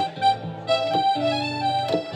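Harmonica playing a melody of held notes over strummed acoustic guitar and upright bass, in an instrumental break between sung verses of a country-folk song.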